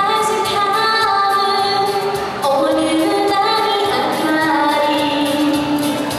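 A woman singing a solo song with long held notes, over instrumental accompaniment with a steady beat, amplified through a hall's PA speakers.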